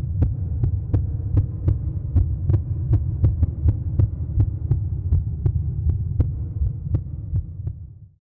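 Closing soundtrack: a low, steady droning pulse under evenly spaced sharp ticks, about three a second, that fade and stop at the very end.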